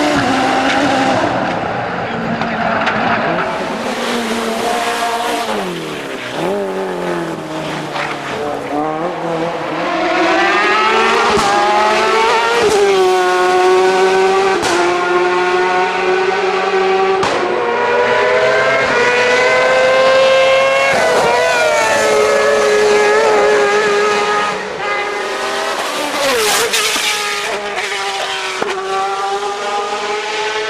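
Race car engines at full throttle on a hillclimb, one car after another. Each engine's pitch climbs and then drops back repeatedly as it shifts through the gears, with a few sharp cracks along the way.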